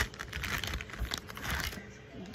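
Clear plastic packaging bag being pulled open by hand, starting with a sharp snap and followed by crinkling and rustling as the goggles are drawn out.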